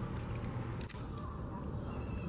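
Low, steady trickle of water from an artificial rock fountain, under quiet outdoor ambience.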